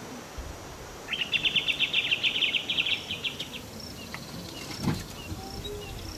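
A rapid pulsed trill from a wild bird or insect lasts about two and a half seconds, at roughly ten pulses a second. It is followed by faint short chirps and a single knock near the end.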